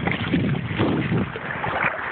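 Wind buffeting a phone's microphone over water rushing past a boat on choppy sea. The low gusting eases about a second in, leaving a steadier hiss.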